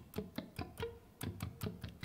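Electric guitar played with short, separately picked notes across the strings, each with a sharp pick click, about seven a second. This is sweep picking done the wrong way, with the pick 'hopping' in little jumps from string to string instead of sweeping through in one motion.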